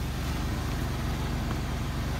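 1995 Buick LeSabre's 3.8-litre V6 idling steadily, a low, even rumble.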